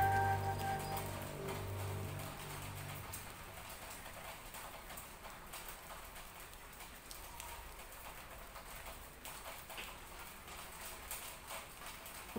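Soft music with held notes fades out over the first two or three seconds. It leaves a faint background of scattered light taps, raindrops dripping on leaves.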